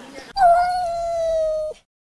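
A single long cat meow, held at a nearly steady, slightly falling pitch for about a second and a half, then cut off abruptly.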